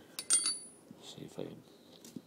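Small steel hardware clinking against metal: a few quick clicks about a quarter second in, one with a short high ring.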